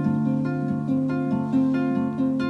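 Acoustic guitar being fingerpicked: a slow pattern of plucked chord notes that ring on over one another, a new note coming in about every half second.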